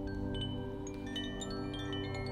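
Koshi chime ringing: many short, high chiming notes in quick, irregular succession, growing busier in the second half, over a steady low drone.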